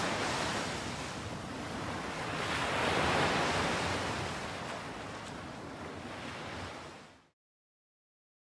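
Ocean surf rushing, swelling to a peak about three seconds in and easing off, then cutting off abruptly to silence near the end.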